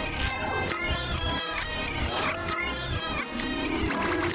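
Upbeat cartoon theme music, dense and steady, with several sliding, gliding notes.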